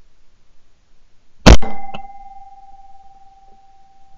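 A single shotgun shot, a sharp loud report about one and a half seconds in, fired at a flying pigeon, followed by a faint click and a steady high tone that rings on for about three seconds.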